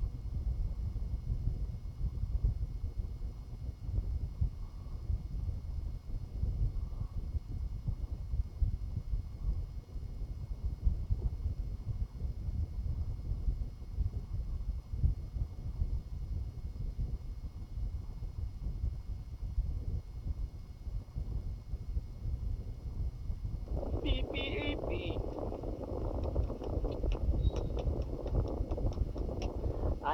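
Steady low rumble of microphone handling noise from a hand-held recording, with a few faint steady high tones over it. About 24 seconds in, sound from the phone's speaker starts with a few quick clicks, and a voice is heard near the end.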